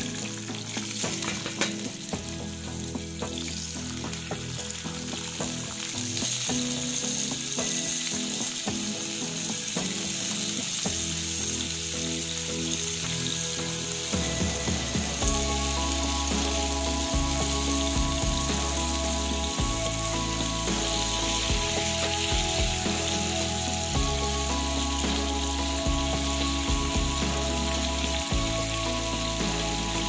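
Raw potato slices frying in hot oil in a pan, a steady sizzle as more slices are dropped in by hand. Background music with held low notes runs underneath and grows fuller about halfway through.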